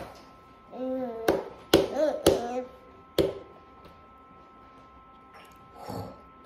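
A baby's hands slapping the plastic tray of a high chair: four sharp knocks within about two seconds, with a short voice in among them, then quiet.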